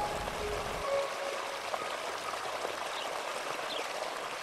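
Steady rushing sound of flowing water, even and unbroken. A few faint bird chirps come near the end.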